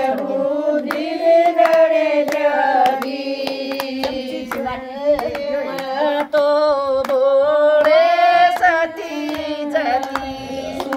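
Women singing a Haryanvi folk bhajan in a steady melody, accompanied by rhythmic handclaps and hand strikes on a clay water pot with a plastic sheet tied over its mouth, played as a drum.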